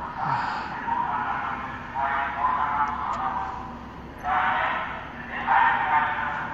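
A police car's roof loudspeaker playing a recorded spoken warning announcement, the voice thin, with little low end, coming in short phrases with gaps between them.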